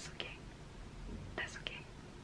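A woman's voice in a pause between sentences: a few short, breathy, whispered sounds with no full words.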